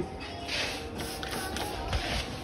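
Faint background music, with a short hiss of chemical spray being squirted about half a second in.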